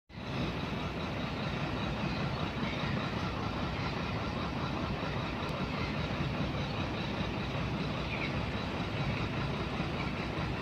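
Steady outdoor background noise, a low rumble.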